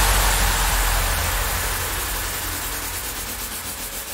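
Rawstyle track in a breakdown: a wash of white noise over a low bass rumble, with no drums, fading steadily.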